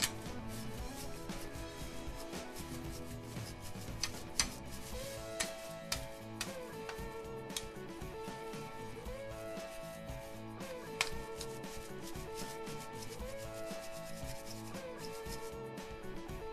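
Stiff bristles of a bike-cleaning brush scrubbing a bicycle's frame, crank and chainrings wet with wash fluid, a rubbing sound with scattered small clicks. Light background music with a repeating phrase plays under it.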